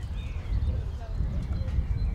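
Hoofbeats of a horse trotting on a sand dressage arena, over a steady low rumble, with faint voices in the background.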